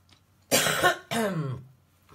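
A person clearing their throat twice: a loud, rough burst about half a second in, then a shorter, falling voiced one just after a second.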